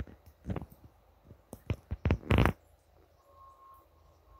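A person sniffing close to the microphone: several short bursts of breath through the nose, the loudest cluster a little past the middle.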